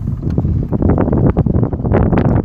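Wind buffeting the microphone out on a boat: a loud, low rumble broken by many short, irregular knocks and slaps.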